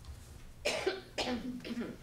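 A woman coughing a few times in quick succession into the podium microphone, clearing her throat before she speaks.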